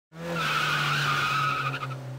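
Cartoon sound effect of a car sliding in with a tyre screech: a steady squeal over a low engine hum, fading out near the end.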